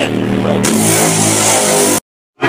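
Loud live electronic dance music from a festival stage, heard through a phone's microphone: a sustained low synth chord, with a hissing noise swelling in about half a second in.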